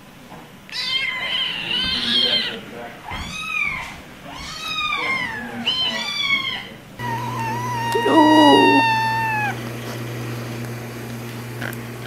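Young kittens mewing: about six short, high, arching mews, some overlapping. After a cut, one longer meow falls slowly in pitch over a low steady hum.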